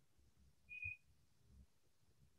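Near silence with faint room noise, broken by one short, high-pitched chirp a little under a second in.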